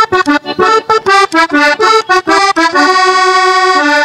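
Diatonic button accordion playing a porro solo: a quick run of short notes, then a chord held for about a second near the end.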